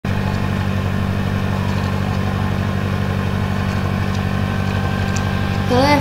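A steady low mechanical hum with a fast, even flutter, running at a constant level. A woman's voice begins just before the end.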